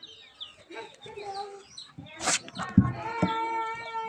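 Small birds chirp for the first two seconds. Then comes a brief rush of noise and a thump, and about three seconds in a rooster gives one long crow.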